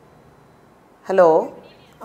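Speech only: a single drawn-out "hello" with a falling pitch about a second in, after faint steady line hiss.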